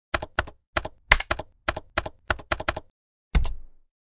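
Keys typed briskly on a computer keyboard: about ten quick clicky keystrokes, each a double click. About three seconds in comes one heavier keystroke with a low thud.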